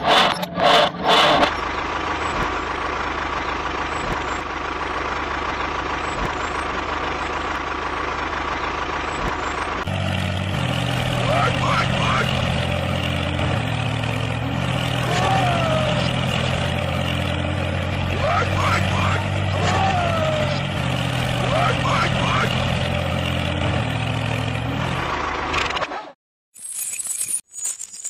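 Tractor engine running steadily. About ten seconds in, the sound changes to a deeper, louder engine note that holds until near the end. Short high chirps rise and fall over it several times.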